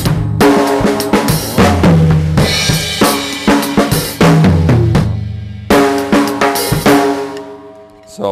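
Acoustic drum kit played as a demonstration lick in triplets: rapid strokes on the snare, toms and kick drum with crash cymbals, ringing out near the end.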